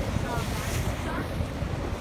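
Wind buffeting the microphone on a cruise boat's open deck, over a steady low rumble of the boat and water, with a brief surge of hiss near the middle.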